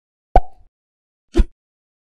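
Animated-logo sound effect: two short pops about a second apart, the first with a brief tone trailing after it.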